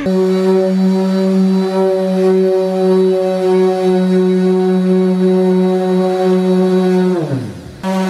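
Random orbital sander running at a steady pitch while sanding a car's silver paint. About seven seconds in it spins down with a falling pitch, then starts up again near the end.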